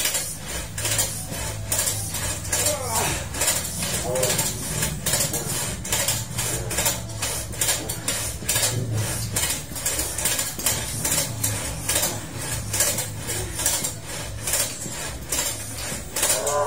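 Home exercise equipment clicking and clattering with metal parts in a quick, even rhythm through repeated strokes, over a low steady hum.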